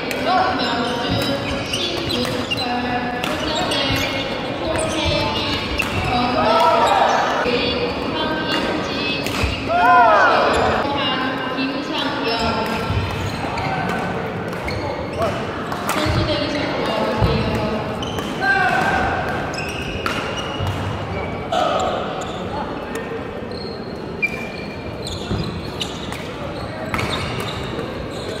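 Badminton doubles rally in a sports hall: repeated sharp racket strikes on the shuttlecock and footfalls on the court floor, with players calling out and voices around the hall.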